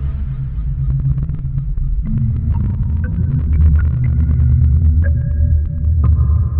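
Dark film score music: a loud, deep low drone, with held higher tones entering one after another from about two and a half seconds in.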